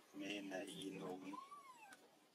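Baby macaque crying: a wavering, drawn-out cry for just over a second, then a thin high whimper that rises and falls.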